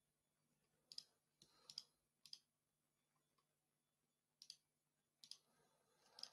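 Faint, scattered clicks at a computer, about six spread unevenly over a few seconds in near silence.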